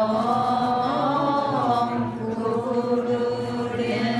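Voices chanting a Buddhist mantra in a slow, unbroken sung line of long held notes, the pitch lifting briefly about a second in.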